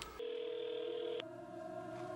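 Quiet, steady electronic tones at a few pitches that begin a moment in; the lowest tone cuts off suddenly about a second in while the others hold.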